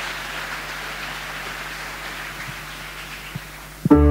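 Audience applauding, an even patter of clapping that slowly dies down. Near the end, music starts abruptly and loudly.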